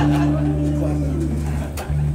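Live electric bass and electric guitar playing long sustained notes, the low notes shifting pitch partway through. A single sharp hit from the drum kit comes near the end.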